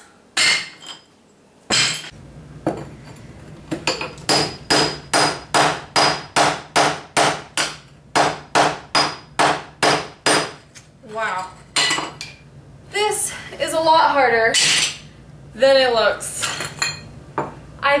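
Hammer striking a masonry chisel to chip old ceramic tile off a countertop. A steady run of sharp metal-on-metal strikes, about three a second, lasts several seconds. After it come fewer, irregular strikes.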